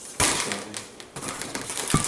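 Twisted latex balloons being handled and knocked: a sharp rubbery hit with a rustle about a quarter second in, a softer knock around a second in, and a short tap near the end.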